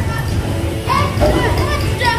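A young child's high-pitched voice making short calls, about a second in, over a steady low rumble.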